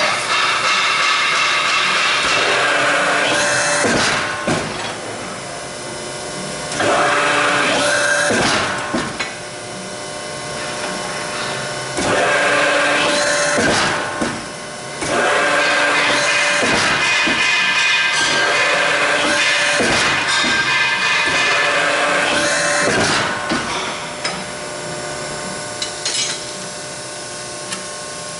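Press brake running with a steady whine that swells over several loud stretches of a few seconds as the ram cycles, with sharp clunks as steel rebar is air-bent between the dies.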